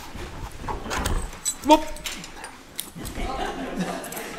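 A man's short exclamation, "whoop!", with knocks and low bumps as a heavy object is handled and lifted from a table.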